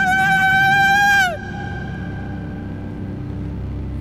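A high operatic voice holds a long sung note, then slides down in pitch and breaks off just over a second in. A quieter low drone carries on underneath.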